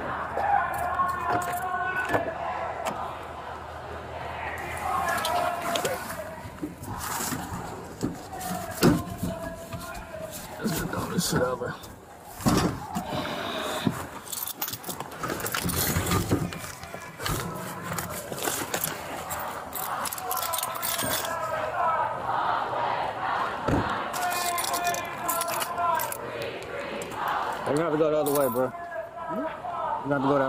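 Indistinct voices talking throughout, mixed with knocks, rustles and clinks from gear being handled and rubbing against a body-worn camera.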